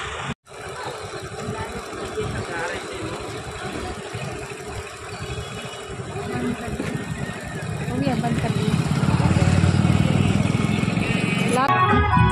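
Street noise with passing motor vehicles and people talking in the background, with a motorcycle engine growing louder over the last few seconds. The sound cuts out briefly about half a second in.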